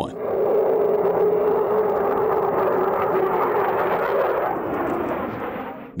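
Jet noise from an SR-71 Blackbird's twin Pratt & Whitney J58 engines as it flies past: a steady rushing sound with a strong low hum, easing off near the end.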